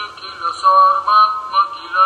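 A man's voice reciting in a sing-song, chant-like way, holding a few notes. It sounds thin, with little low end.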